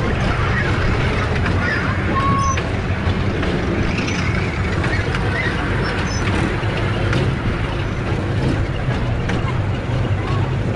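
Steady low hum and rumble of a moving fairground kiddie ride, with people chattering in the background.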